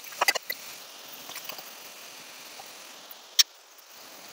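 Chopped onions, tomatoes, chillies and cashews frying in oil in a kadai, a faint steady sizzle, with a few quick clinks of the spatula against the pan at the start and one sharp clink about three and a half seconds in.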